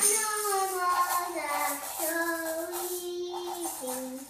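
A child singing, the tune stepping down and settling into a long held note in the second half, with a drop to a lower note near the end.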